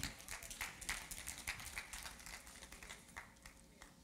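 Faint footsteps on a stage: a run of quiet, irregular taps that die away about three seconds in.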